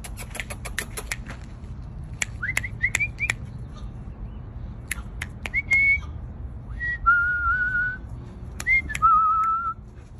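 A person whistling to call a dog: a run of quick clicks at the start, then several short rising whistles, then two longer held whistled notes in the second half.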